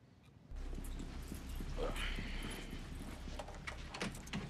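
A steady low rumble with a quick, irregular patter of knocks and clicks, starting suddenly about half a second in, with a brief faint voice near the middle.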